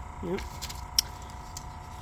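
Quiet handling of a plastic stencil being shifted by hand on paper, with one sharp click about a second in, over a faint steady hum.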